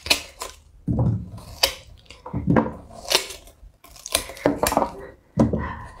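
Watermelon rind being torn off by hand, piece by piece: a run of about ten sharp, crisp snaps, irregularly spaced.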